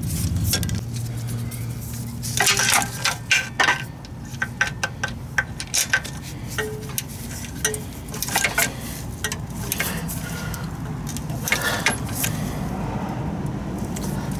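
Hand tools on steel transmission bolts: irregular metallic clinks and ratchet clicks as the bolts are threaded in and snugged down, in a few clusters, over a low hum that fades after a few seconds.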